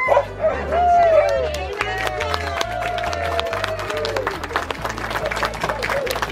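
Alaskan husky sled dogs howling: long wavering, rising-and-falling howls in the first few seconds, giving way to a rapid patter of sharp clicks or yips in the second half.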